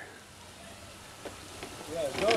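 A quiet lull between voices: faint steady background hiss, with a couple of soft taps a little after a second in.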